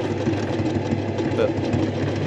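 Sewing machine running steadily, stitching thread fill into denim.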